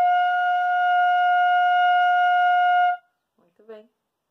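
Bamboo pífano, a Brazilian transverse fife, sounding one long steady note with some breath noise, held about three seconds and then stopped: a long-tone exercise once the air is directed into the embouchure hole.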